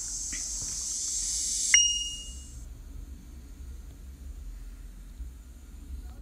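Steady high hiss over a low hum, with a click and a short, high electronic beep a little under two seconds in; the hiss fades soon after.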